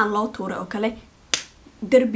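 A woman speaking, then after a short pause a single sharp finger snap, then she speaks again.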